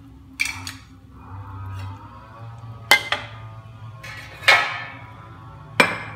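Metal spatula clinking against a wok of fish soup: four sharp knocks spread over a few seconds, each ringing briefly.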